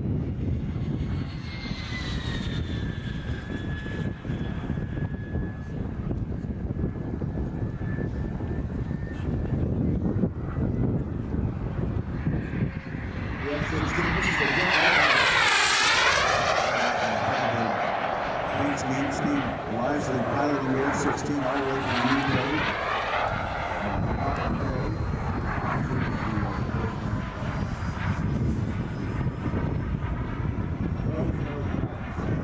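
Turbine-powered radio-controlled Jet Legend F-16 model jet in flight: a high, steady turbine whine, then a loud close pass about halfway through, its pitch sweeping as it goes by before the sound fades away again.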